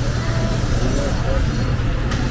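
Street noise from road traffic: a steady low engine rumble with faint voices in the background.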